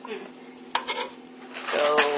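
A utensil clinking and scraping against a bowl of chopped onions: a few sharp clicks, the loudest about three quarters of a second in, over a steady low hum.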